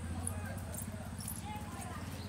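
Motorcycle engine idling, a steady low, rapidly pulsing hum, with faint voices over it.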